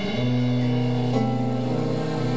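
Band playing an instrumental introduction: a held low bass note under sustained chords, which change a little over a second in.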